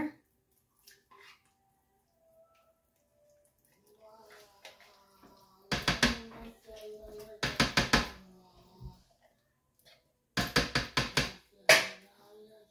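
A metal can of pumpkin puree being knocked and scraped with a spatula over the rim of a ceramic crock pot to empty it: three clusters of quick knocks, each a few in a row, about six seconds in, about seven and a half seconds in, and again near the end.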